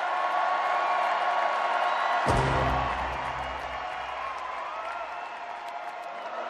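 Live concert music over crowd noise: held synthesizer tones, with a deep bass note struck about two seconds in that fades away over the next few seconds.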